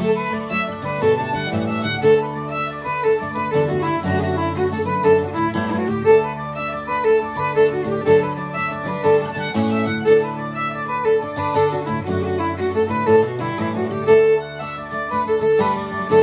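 Fiddle and acoustic guitar playing a lively jig in D: the fiddle carries the quick melody while the guitar strums chords underneath.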